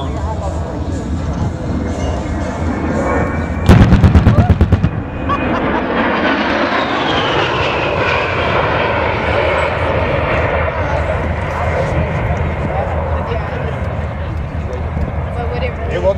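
A rapid string of about a dozen loud bangs lasting about a second, about four seconds in: ground pyrotechnics simulating an A-10's 30 mm cannon strafe. After it the A-10's twin General Electric TF34 turbofans pass by with a steady jet noise and a whine that falls in pitch.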